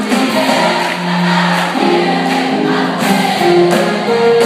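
Large high-school choir singing an upbeat song in chorus, with one long held low note about a second in.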